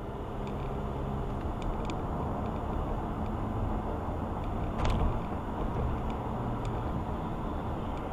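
Steady road and engine noise inside a moving car, with a brief click about five seconds in.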